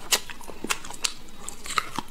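Close-miked eating sounds of a man biting and chewing the meat off the end of a braised leg bone, with several sharp, crunchy clicks spread through the two seconds.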